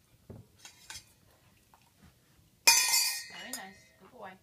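Stainless steel dog bowl hit once with a sharp metallic clank about two-thirds of the way through, then ringing as it fades over about a second, as the dog drops an object into it. A few light taps come before it.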